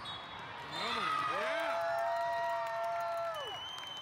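Several voices shouting together in a long, held cheer, starting about a second in and dying away near the end, over the din of volleyball play and a crowd in a large hall. A thin, high steady tone comes in near the end.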